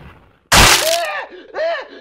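A sudden loud crash sound effect about half a second in, followed by a man's short, strained, pained cries.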